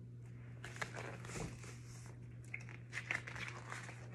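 Paper rustling and crinkling with small handling clicks as a page of a picture book is turned, from about half a second in until nearly the end, over a steady low electrical hum.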